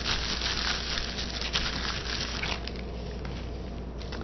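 Plastic sandwich bag crinkling and rustling as hands press and rub it against paper, dying away after about two and a half seconds.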